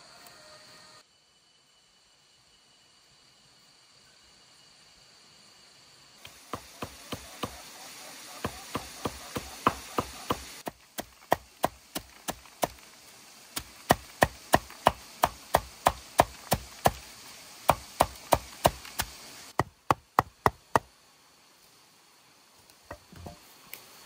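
Repeated chopping strikes, a blade hitting over and over at about two to four strokes a second, in several runs with short breaks between them.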